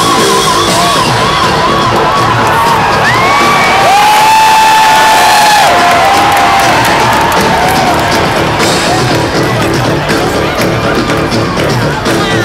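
Rock band playing live, with an electric guitar sounding wavering, bending lead notes over the full band, and a crowd cheering. The recording is loud and close from the audience.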